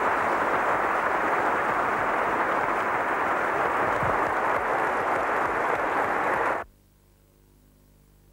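Audience applauding, a steady dense clapping that cuts off abruptly about six and a half seconds in, leaving only a faint hum.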